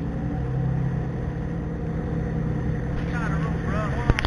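Boat motor running with a steady low drone while the boat is under way, with faint voices near the end.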